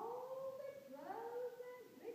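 A child's voice making two long, drawn-out calls, each rising at the start and then held, the second beginning about a second in.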